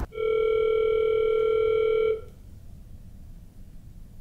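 Telephone ringback tone from a hotel room phone: one steady two-second tone that cuts off sharply, leaving a faint hiss on the open line while the call waits to be answered.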